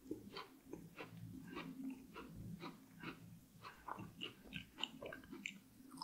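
Close-miked chewing of a mouthful of chocolate cake, with short chews about three times a second.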